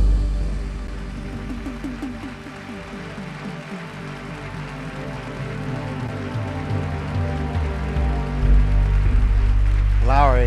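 Lowrey Legend Supreme electronic organ sounding sustained chords. The level falls away just after the start and swells back up near the end.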